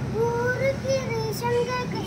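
A child's voice singing a short tune in a few held, high notes that step up and down.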